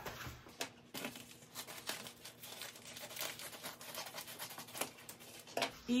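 Brown paper mailer bag being torn open and handled, an irregular run of paper crinkling and crackling.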